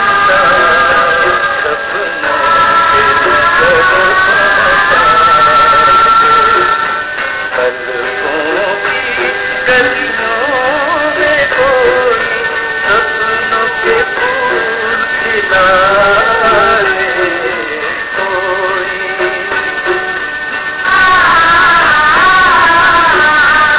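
Music: a Hindi song, a melodic vocal line over instrumental accompaniment, with a softer, thinner passage through most of the middle.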